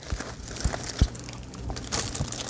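Aluminium foil crinkling as gloved hands pull open a foil-wrapped brisket, with irregular crackles and a couple of soft thuds about a second in.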